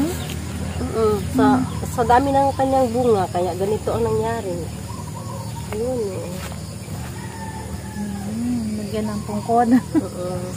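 Women's voices talking, carried over a steady low hum.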